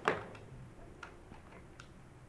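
A sharp click right at the start, followed by four fainter, unevenly spaced clicks.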